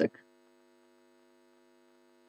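Faint, steady electrical mains hum in the recording, with no other sound once a spoken word ends right at the start.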